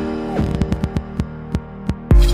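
Logo-reveal sound effects: a low steady drone with a falling sweep about half a second in, over a run of sharp clicks that come quickly at first and then space out toward the end.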